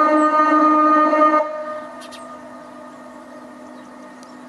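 Muezzin's call to prayer sung through the minaret loudspeaker: one long, slightly wavering note that ends about a second and a half in, leaving a faint steady tone.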